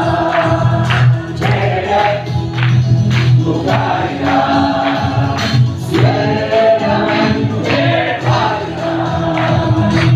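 A group of people singing together, with hand claps through the song.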